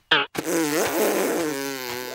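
A brief sharp sound, then a drawn-out cartoon vocal sound effect that wavers up and down in pitch.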